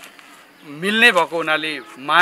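A man's voice speaking from about a second in, with one syllable drawn out on a flat held pitch.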